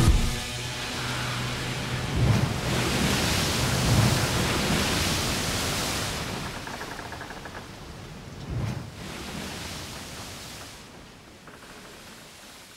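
A wash of hiss-like noise under quiet closing music. The noise swells in the first half and then slowly fades out. A few soft low hits come about two, four and eight and a half seconds in.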